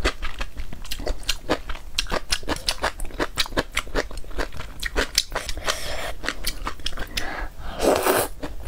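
Close-miked eating of luosifen rice noodles in spicy broth: a quick run of wet chewing clicks, with noodle slurps in the second half, the loudest near the end.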